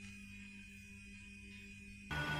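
Faint steady sustained tones, a low hum under a thin high tone: a quiet held chord of background music.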